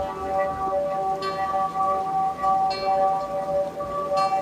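Ambient background music of sustained, bell-like tones, with a chime struck twice, about a second and a half apart.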